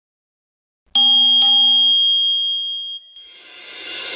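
A bell-like notification chime sound effect, struck twice in quick succession about a second in and ringing out for about a second. Near the end a swell of noise builds up louder.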